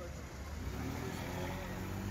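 Street noise: a motor vehicle engine running steadily, with faint voices from a crowd.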